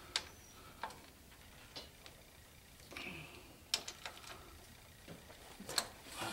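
A ratchet wrench clicking slowly and unevenly as it works a transfer case mounting bolt, a few separate clicks with pauses between.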